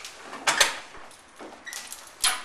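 A dog fetching a non-slip floor mat: a few short scuffing, rustling noises, the clearest about half a second in.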